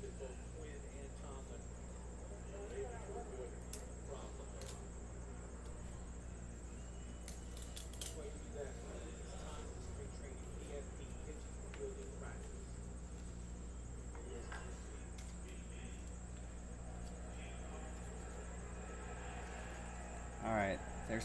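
Quiet room tone: a steady low electrical hum and a faint high whine, with faint indistinct voices and a few soft clicks as trading cards are flipped in the hands.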